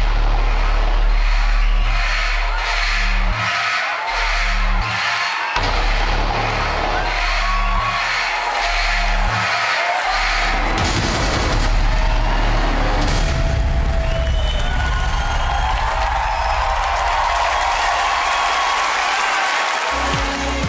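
Dramatic stage music with a pulsing bass beat, then, about halfway through, a theatre audience breaks into cheering and applause over the continuing music.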